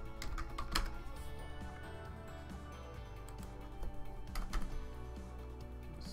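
Computer keyboard typing over steady background music: a few quick key clicks just after the start and another short cluster past four seconds, as a trade order is entered.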